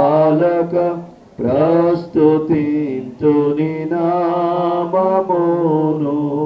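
A single man's voice chanting in a sung style, in long held phrases with brief pauses between them.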